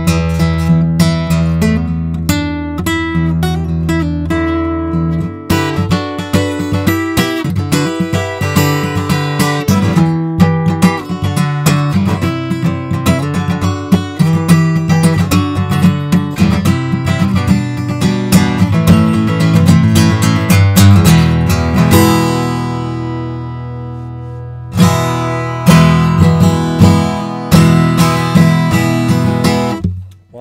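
Acoustic guitar being played, a steady run of plucked notes and chords. About two-thirds of the way through, a chord is left ringing and fades for a few seconds before the playing starts again, stopping at the very end.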